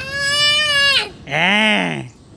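A young child's drawn-out, wordless playful shout, high and quavering, followed near the end by a second long vocal sound, lower in pitch, that rises and falls.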